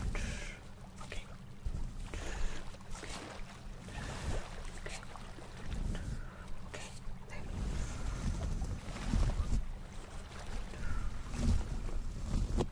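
A soft makeup brush swept repeatedly over a microphone up close, making an irregular rustling swish with dull low rumbles.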